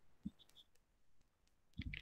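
Near silence, with one faint short click about a quarter of a second in.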